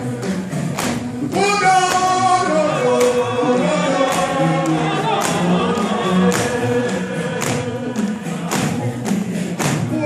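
Group gospel singing in a worship service, with a steady percussive beat of about two strokes a second; the voices come in about a second in.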